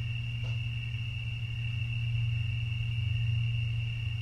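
Background room tone in a pause between words: a steady low hum with a continuous high, thin cricket trill above it.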